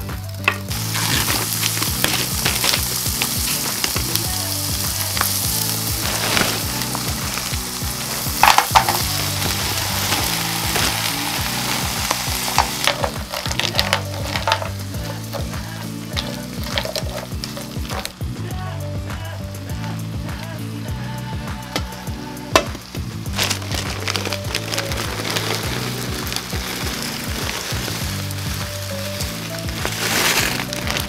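Salami cubes and peeled shrimp sizzling as they fry in a non-stick pan, stirred with a spatula that clicks and scrapes against the pan now and then. The sizzle is loudest in the first dozen seconds and quieter after that.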